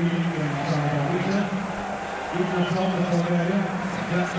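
Stadium crowd noise on a broadcast sound track, carrying a steady low hum that drops out briefly about halfway through.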